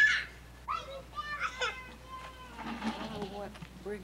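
High-pitched voices calling out: a sharp, loud cry at the start, then several shorter calls.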